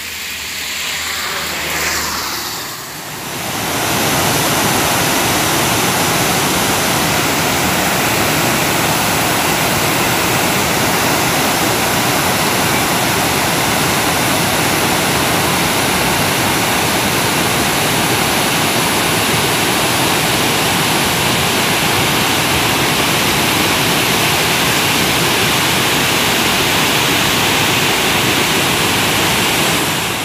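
Water pouring over a dam's overflow spillway, a steady loud rush that sets in about three seconds in. Before it, a brief hiss swells and fades, peaking around two seconds.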